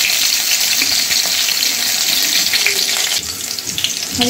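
Green chillies and mustard seeds frying in hot mustard oil in a kadhai: a steady sizzle with small pops, easing a little near the end.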